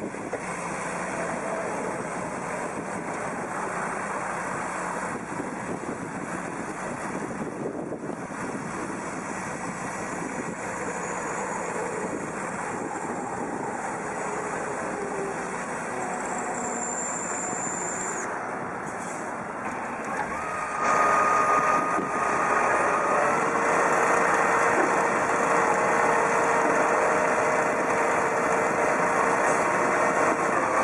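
Large farm tractor's diesel engine working hard under load as it pulls a loaded hooklift container trailer through deep mud. About twenty seconds in the engine grows louder and a steady whine joins it.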